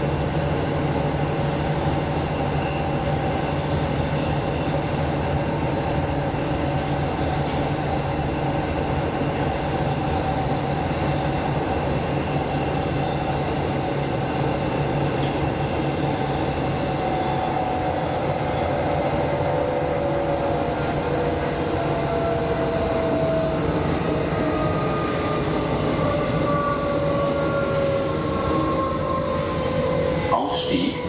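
Hamburg S-Bahn class 472 electric multiple unit heard from inside the passenger car, running with a steady rumble and the whine of its traction motors. In the second half several whining tones fall slowly in pitch as the train slows.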